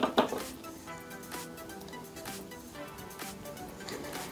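A short metallic clink near the start, as a tool is set down on the workbench, then soft background music.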